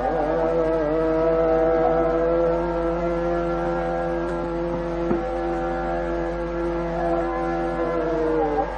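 Male Hindustani classical vocalist of the Kirana gharana singing Raga Hamir, sliding briefly into one note and then holding it long and steady, with a single tabla stroke about five seconds in.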